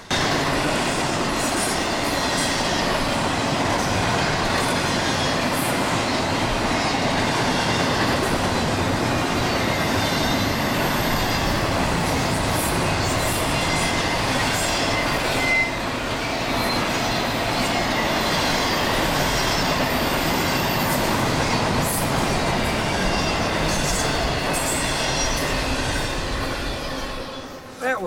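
Double-stack intermodal freight cars passing close at speed: a steady loud rolling clatter of steel wheels on the rails, with a thin high wheel squeal through the middle. The sound dies away just before the end.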